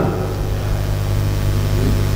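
A steady low hum with many even overtones, unchanging throughout.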